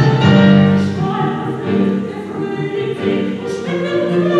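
Men's choir singing held chords, the low voices sustaining notes that shift from chord to chord.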